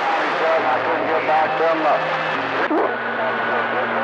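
CB radio receiver on channel 28 picking up skip: several distant stations' voices garbled and overlapping under static, with steady low hum-like tones where signals beat together. A short laugh comes through a little past halfway.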